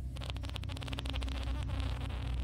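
A long, buzzy fart sound effect: a rapid flapping rasp lasting almost two seconds.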